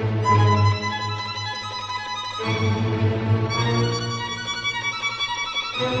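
Instrumental background music with long held notes that change every second or two.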